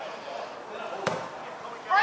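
A single sharp thud of a football being kicked about a second in, over faint shouting voices.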